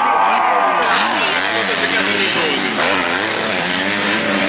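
MX2-class motocross bike engines revving hard on the race track, the pitch rising and falling again and again as the riders work the throttle over the jumps.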